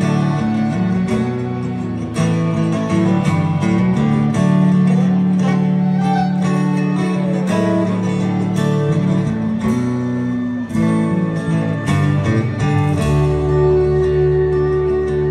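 Live rock band playing an instrumental passage with no singing: strummed acoustic guitar, electric bass, fiddle and drums. The bass drops to a strong low held note about a second before the end.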